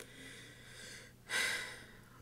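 A person's breathing in a pause between sentences: faint at first, then one short, louder breath about a second and a half in.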